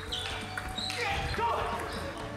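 Table tennis ball clicking off the bats and table during a rally, with a short voice about halfway through, over steady background music.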